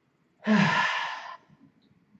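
A man's single loud sigh, a voiced breath out lasting about a second, starting about half a second in.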